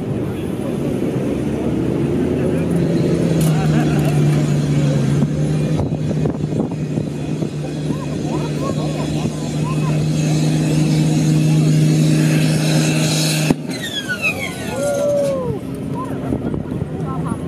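Massey Ferguson 699 pulling tractor's diesel engine running flat out at steady high revs under load, then cutting off abruptly with a sharp crack about three-quarters of the way through as the engine blows up. A few falling whines follow.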